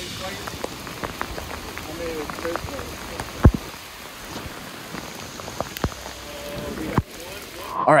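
Rain pattering on a tarp shelter, with irregular drips and taps and a sharp knock about three and a half seconds in.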